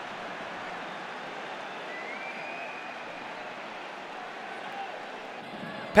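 Steady stadium crowd noise at a football match, an even low hubbub with a faint rising whistle about two seconds in.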